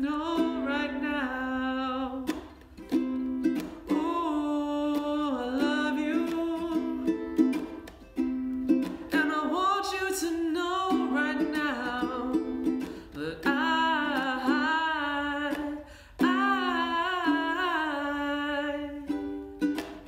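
Fender ukulele strummed steadily in chords, with a man singing the melody along over it. The playing drops out briefly two or three times.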